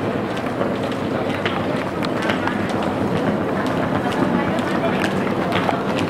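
Wheeled suitcases rolling across a tiled floor with many footsteps, a steady clatter of small clicks, under the murmur of people's voices.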